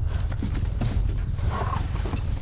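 A low, steady rumbling drone with a few scattered creaks and knocks over it, the tense sound bed of a horror-film scene.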